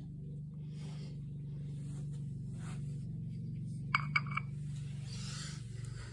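A steady low hum with a fine pulse, and a short burst of light metallic clinks about four seconds in.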